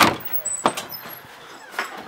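A front door being opened: a sharp clack at the start, then a lighter knock about two-thirds of a second in and a fainter one near the end.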